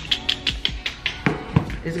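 Metal fork mashing bananas in a plastic bowl: a quick run of taps and clicks, about six a second, through the first second, then a couple of heavier knocks. Soft background music plays underneath.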